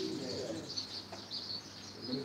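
Small birds chirping over and over in short high calls, with a faint voice trailing off at the start.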